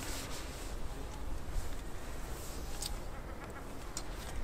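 A few light clicks from handling a Mamiya RB67 medium-format film camera, with a sharper click about three quarters of the way through and another near the end, over a steady low background rumble.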